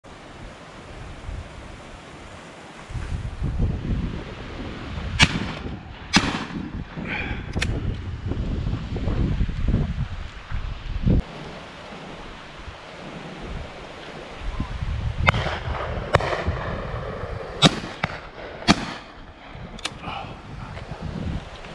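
Shotguns firing at driven pheasants: about eight sharp reports in two bursts, a few seconds apart within each burst, with wind rumbling on the microphone between them.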